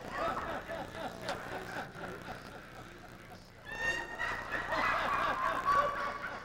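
Indistinct voices, talk close by that is not clearly picked up. About four seconds in, a stronger, higher-pitched voice comes in and lasts about two seconds.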